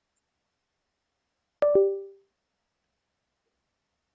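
A short two-note electronic chime about one and a half seconds in, a higher note then a lower one, dying away within half a second: a notification sound from the computer.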